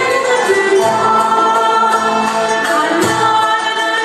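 A female soloist and a women's choir singing a Turkish art music song in long, held notes.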